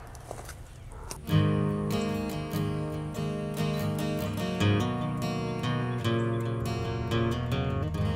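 Background music on strummed acoustic guitar, coming in about a second in after a brief moment of faint ambience.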